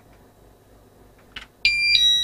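Wireless alarm system giving a short, high electronic beep near the end, which changes pitch partway through and lasts about half a second; a faint click comes just before it.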